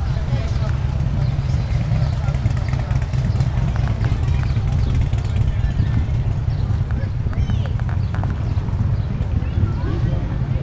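Background chatter of a crowd of people over a steady low rumble.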